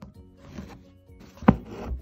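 Needle and thread drawn through fabric stretched in an embroidery hoop while backstitching: a sharp tap about one and a half seconds in, then a brief rub of thread through the cloth. Faint background music underneath.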